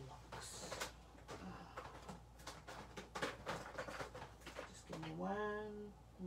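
Scattered light clicks and knocks of stamping supplies being handled and rummaged through, then a brief hummed voice near the end.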